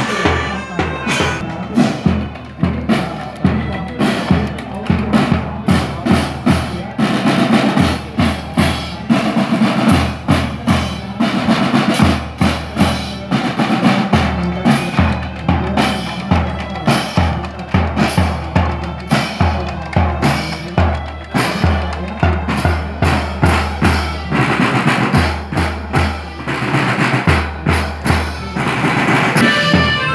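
Marching band of accordions, melodicas and drums playing a march, with bass and snare drums beating a steady rhythm under the melody.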